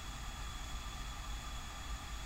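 Steady room noise in an office: a low hum with a hiss and a faint high steady whine, with no event standing out.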